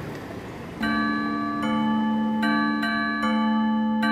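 Vibraphone entering about a second in with ringing bell-like struck notes, a new note roughly every eight tenths of a second, each left to sustain under the next.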